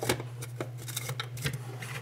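The clear plastic lid of a Krups F203 blade grinder being fitted and handled, with a few light plastic clicks and rubs, over a steady low hum.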